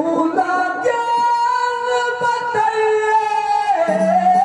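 Male singer performing a Haryanvi ragni through a microphone and PA, holding long notes that step from one pitch to the next about every second.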